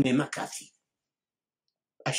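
A man's voice speaking, breaking off under a second in, followed by dead silence.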